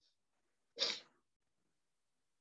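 A person sneezing once, a single short burst about a second in.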